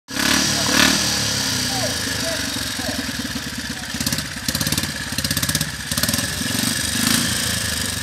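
Zündapp KS 750's flat-twin engine idling, a low, uneven pulsing beat that swells a little a few seconds in.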